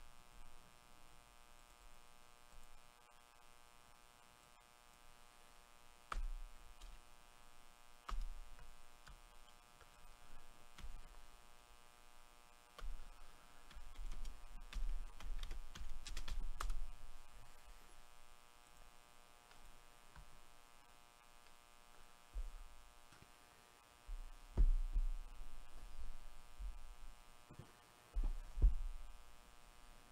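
A steady electrical hum runs underneath scattered computer-mouse and keyboard clicks and low desk thumps. The clicks come in small clusters, busiest about halfway through and near the end.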